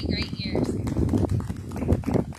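A woman's sung note with a wavering pitch dies away about half a second in, followed by a few people clapping their hands in irregular, scattered claps.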